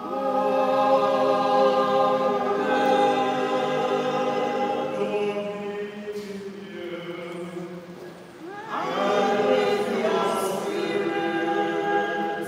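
Voices singing a slow Catholic liturgical chant in long held notes, with a short lull partway through and a new phrase rising in about nine seconds in.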